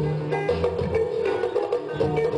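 Live band music: a kora plucked over a drum kit and guitar, with steady low bass notes.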